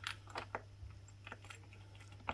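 Faint, irregular clicks and ticks as a wing nut is turned off its stud by a gloved hand on the ATV's plastic air filter housing lid, over a steady low hum.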